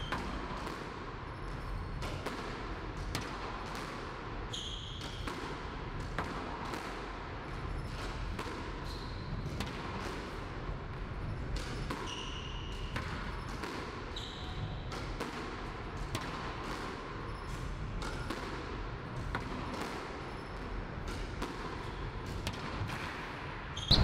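Squash ball struck by a racket and hitting the front wall in a quick, steady run of hits, roughly one to two a second, as a player volleys alone in a solo drill. A few short high squeaks come between the hits.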